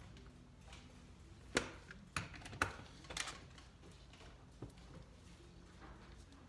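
About five short clicks and knocks of hands handling small metal hardware: a washer and screw being set on a scooter wheel's honeycomb tire and a cordless drill being picked up, the loudest knock about one and a half seconds in. The drill's motor is not running.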